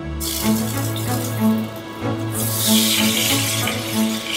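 Meat sizzling as it is laid into a hot stainless-steel frying pan. The hiss starts just after the first piece goes in and grows louder about halfway through as more is added. Background music plays throughout.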